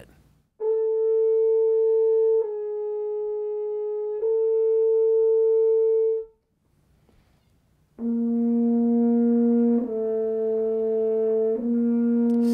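Double French horn playing held, tongued notes: three notes of about two seconds each, the middle one a little lower and softer. After a pause of about two seconds, three more held notes follow, pitched lower.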